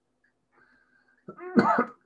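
A person coughs briefly, about a second and a quarter in, after a pause with almost no sound.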